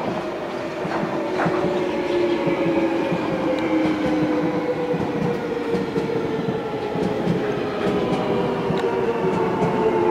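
Alstom 1996 stock Jubilee Line deep-tube train running into the platform: its GTO inverter propulsion whines in several steady tones that slowly fall in pitch as the train slows, over the rumble of wheels on rail, with a couple of sharp clicks about a second in. The sound grows louder as the cars pass.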